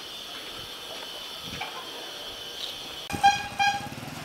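Two short toots of a motorbike horn near the end, over a steady high-pitched hiss.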